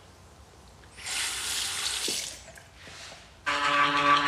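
Water running from a tap into a sink for about a second, then stopping. Near the end a steady droning hum starts.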